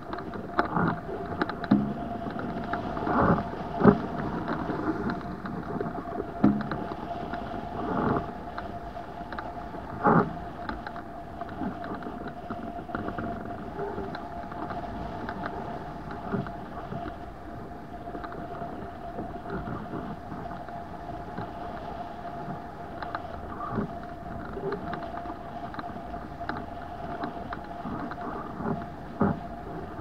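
Rushing airflow over a camera mounted on a hang glider in flight, with a steady tone running through it and irregular gusty thumps, loudest in the first ten seconds.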